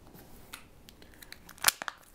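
A chest seal's plastic dressing and liner being handled and crinkled, faint at first, with a few crisp crackles near the end.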